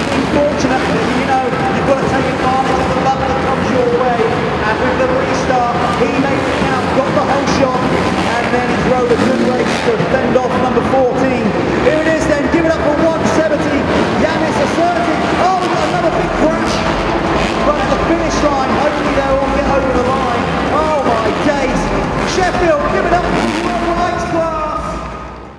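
Several motocross bike engines revving up and down as the riders race round an arenacross dirt track, their pitch rising and falling continually over a steady background din.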